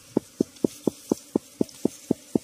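An insect sound: a steady, even pulsing at about four pulses a second.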